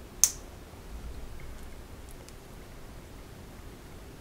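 Small plastic LEGO pieces being pressed and snapped together by hand: one short sharp click just after the start, then a couple of faint ticks over quiet room tone.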